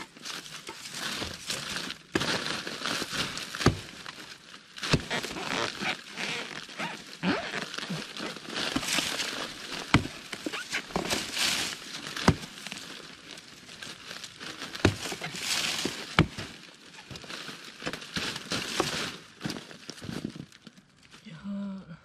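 Axe chopping into the fibrous trunk of a felled fan palm to split it open, with repeated sharp blows a second or two apart. Dry palm fronds and torn fibre crackle and rustle continuously between the strikes.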